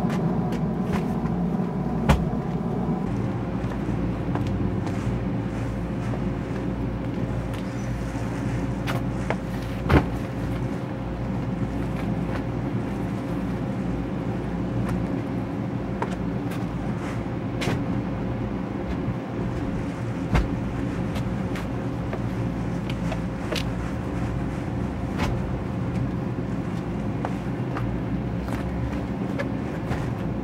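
A vehicle engine idling steadily, with a few sharp knocks over it, the loudest about ten seconds in.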